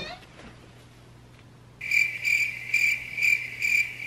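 A cricket-chirping sound effect, a high pulsing chirp repeating about four times a second, cut in abruptly about two seconds in after quiet room tone.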